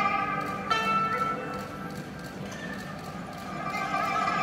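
A Chinese traditional orchestra playing, with held melody notes coming in at the start and again just under a second in.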